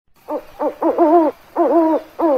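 An owl hooting: five short calls in quick succession, the last two longer and wavering in pitch.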